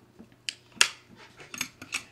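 A combination safe lock's dial being turned by hand, giving a few sharp mechanical clicks. The loudest comes a little under a second in, followed by a quick run of smaller clicks near the end.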